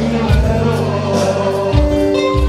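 Loud music with singing over held bass notes.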